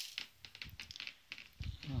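Propolis granules being tipped into a tub on a kitchen scale: a quick, irregular run of small ticks and clicks.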